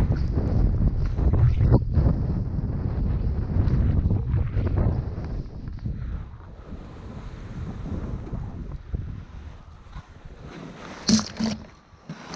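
Wind buffeting the microphone of a skier's head-mounted camera, with skis running over snow. It is heavy and rumbling for the first half while skiing fast, then eases to a softer rush. Two sharp knocks come about a second before the end.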